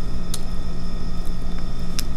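Steady low background rumble with a faint hum, with a light click about a third of a second in and another near the end.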